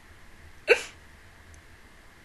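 A woman's single short, hiccup-like laugh about two-thirds of a second in, over a faint steady room hum.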